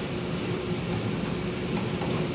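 Steady background hum, an even ventilation-like noise with a faint steady tone.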